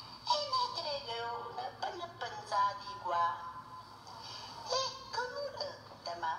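A woman reciting a poem in Italian dialect into a microphone, in an expressive, sing-song voice, with a short lull near the middle.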